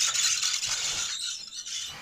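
Rustling and light rattling of close handling noise, as a child shifts about on the carpet and handles Lego train pieces near the microphone; loudest in the first second, then fading.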